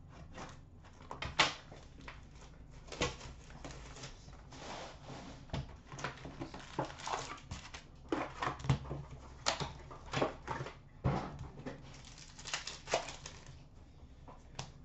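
Foil-wrapped hockey card packs handled and set down on a glass counter: an irregular run of light rustles, crinkles and taps, over a faint steady low hum.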